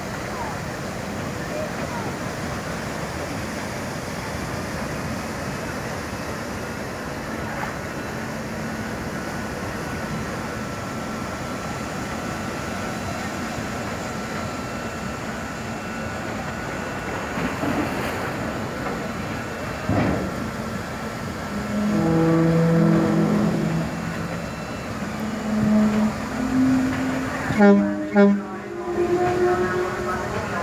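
Steady rush of a fast ferry's engines and the churning wash at its stern as it holds against the quay with its ramp down. Voices come in over it in the last third.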